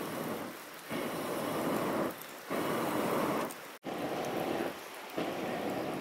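A person blowing through a blow tube into a wood cooking fire to fan the flames. It comes as a series of breathy rushes, each about a second long, with short breaks for breath between.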